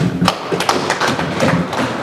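Audience clapping: many quick, irregular claps.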